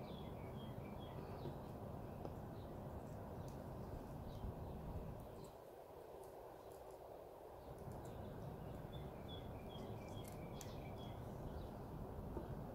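Faint outdoor ambience: birds chirping in quick runs of short notes near the start and again in the second half, over a steady low background noise, with a few soft clicks.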